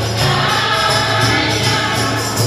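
A group of men and women singing a gospel song together, with a double-headed barrel drum played by hand keeping a steady beat.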